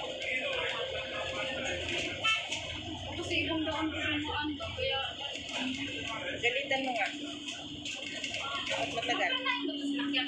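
Indistinct voices talking, with music playing along underneath.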